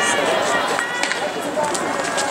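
Indistinct voices calling out outdoors, with a few sharp clicks.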